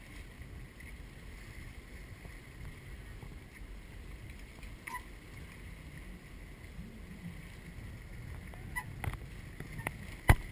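Steady wind rumble on the microphone with small waves lapping against rocks. A few faint knocks near the end come from the trials bike on the boulders.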